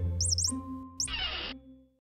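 Closing jingle music with cartoon mouse squeaks: several quick high rising-and-falling squeaks in the first half, then a short hissing burst just after a second in, before the music fades out near the end.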